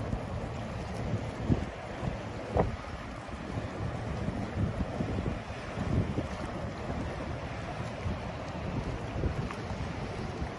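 Wind buffeting the microphone in gusts, over the wash of water along the hull of the car ferry Badger as it passes close by.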